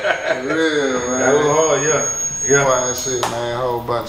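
Men's voices exclaiming in drawn-out, swooping calls, no clear words.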